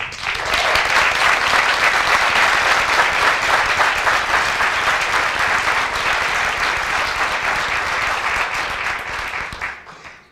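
An audience clapping in a large room: applause builds within the first second, holds steady, then dies away near the end.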